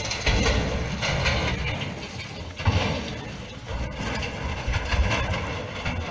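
Landslide rumble: earth, rock and building debris sliding down a hillside, a continuous deep noise that swells and fades irregularly.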